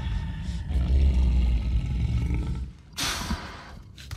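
Horror film soundtrack: a low rumbling drone, then about three seconds in a sudden loud dog snarl as a wild dog lunges in a jump scare, fading quickly.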